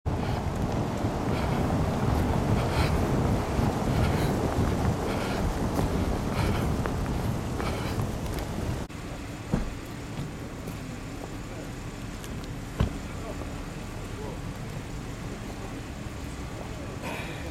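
Wind buffeting a handheld camera's microphone, mixed with street traffic, while the camera is carried along at pace. About nine seconds in the sound drops suddenly to a quieter street background with two sharp thuds a few seconds apart.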